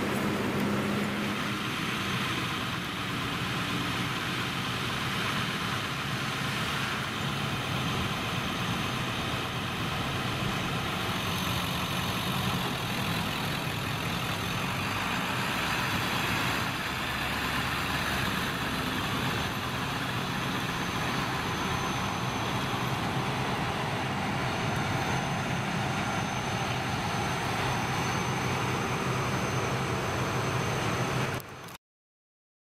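Diesel fire truck engines idling steadily.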